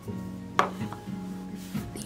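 Soft acoustic guitar background music with held notes, and one sharp click about half a second in.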